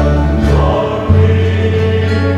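Mixed church choir singing a Vietnamese hymn with instrumental accompaniment under a sustained bass line. The bass moves to a new note about a second in.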